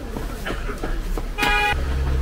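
Short, flat-pitched horn toot about a second and a half in, the loudest sound, followed by a brief low hum. Under it runs busy street-stall noise, with metal utensils clicking and scraping on a hot griddle.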